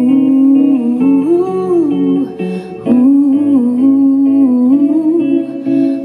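Live band music: a woman singing a held, sliding melody over electric guitars and electric bass.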